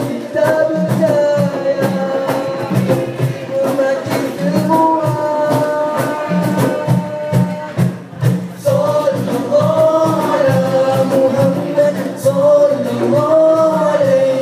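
A group of teenage boys singing a song together through microphones and a PA, several voices at once over a steady rhythmic beat.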